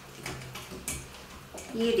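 Spoon stirring thick sauce in a stainless steel frying pan, with a few faint scrapes and light clicks against the metal.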